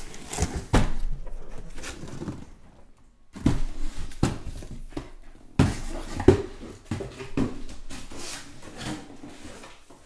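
Cardboard shipping case and shrink-wrapped card boxes being handled, with rustling and scraping of cardboard and a string of sharp knocks as boxes are set down on the table. There is a short lull about three seconds in.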